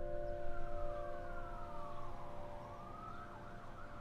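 A piano chord struck just before dies away while a siren wails over it, its pitch sliding slowly down to a low point about halfway through and then rising again.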